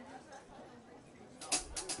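Faint crowd murmur, then about a second and a half in, a handful of sharp rattling shakes from maracas, with a low thump.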